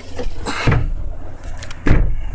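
Handling noise from a handheld camera on the move: two dull knocks, the first about two-thirds of a second in and a louder one near the end, over a steady low hum.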